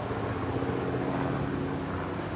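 Helicopter flying overhead, a steady drone with several held low engine tones.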